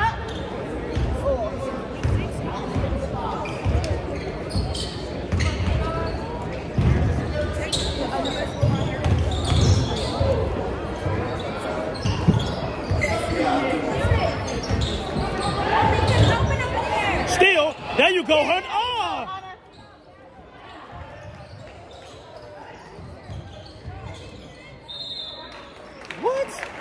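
Basketball game in a gym: a ball bouncing on the hardwood floor with repeated low thumps, high shoe squeaks and voices echoing in the hall. The thumping stops about two-thirds of the way through, and the hall goes quieter.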